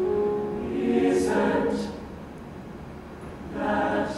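Mixed-voice choir singing: a held chord with crisp "s" consonants fades out about two seconds in, and a short sung phrase comes in near the end.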